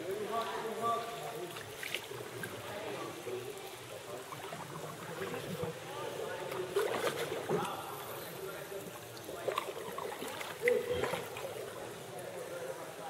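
Sea kayak moving through calm water: paddle strokes dipping and splashing every few seconds over a light lapping of water, with faint voices in the background.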